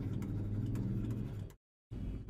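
Light ticks of a stylus on a pen tablet as a word is handwritten, over a steady low hum; the sound cuts out completely for a moment near the end.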